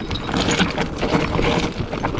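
Orbea Rise electric mountain bike rolling slowly down a loose, rocky trail under braking: tyres crunching over loose stones and the bike rattling with many small irregular knocks.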